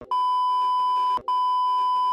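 Steady electronic test tone of a TV colour-bars test card, sounding as two long, even beeps split by a short break just over a second in.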